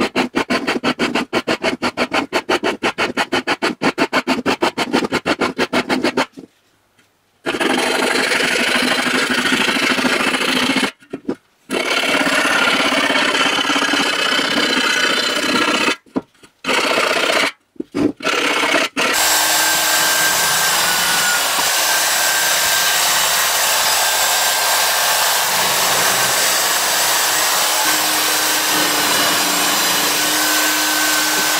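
Small high-speed rotary tool (Dremel-type) cutting into the thin sheet-metal rim of a 5-litre beer keg to free its lid. It pulses rapidly for the first six seconds, then runs as a steady grind that stops briefly a few times, and steadies to an even whine over the last ten seconds.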